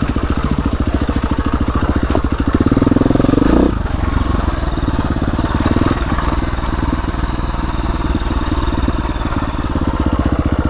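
A KTM dirt bike's engine running under the rider on the trail. It revs up hard about two and a half seconds in, cuts back sharply about a second later, and then runs on at steady, lighter throttle.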